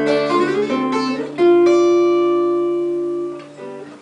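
Twelve-string acoustic guitar played alone: a few picked notes, then a chord struck about a second and a half in that rings out and slowly fades, with a few quieter notes near the end.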